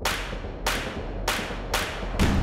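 Sound effects for an animated logo intro: about four quick whip-like swishes, each starting sharply and fading, over a steady low rumble.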